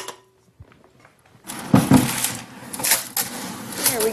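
Aquarium rocks poured into a glass fish tank: a loud, dense clatter of stones that starts about a second and a half in, after a single click at the very start.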